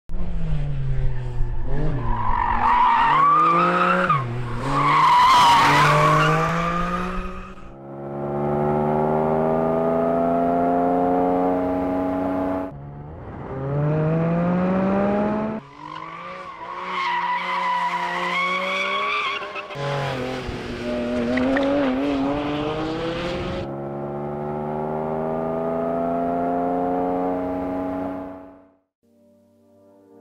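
Porsche 718 Cayman GT4 RS's naturally aspirated 4.0-litre flat-six accelerating hard through the gears, its pitch climbing in each gear and dropping back at each upshift. Tyres squeal through two stretches of cornering, and the sound fades out near the end.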